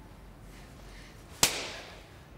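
A single sharp slap to the face about one and a half seconds in, with a short echo dying away after it.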